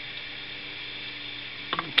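Handling noise from plugging in the antique fan's bakelite plug over a steady low hum and hiss, with a sharp click near the end as the plug goes in. The fan itself is not yet running.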